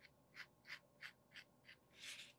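Pencil stroking back and forth on a coated Aquaboard panel, faint, about three short strokes a second, as a sketch line is drawn over to make it darker.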